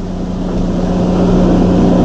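A steady low hum with an even rushing noise underneath, growing slightly louder, in the background of an old tape recording of a lecture hall.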